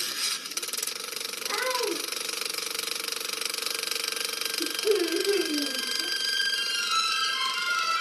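A steady shimmering hiss with faint held tones, the logo animation's soundtrack heard through a computer speaker. Short gliding voice sounds break in about a second and a half in and again about five seconds in.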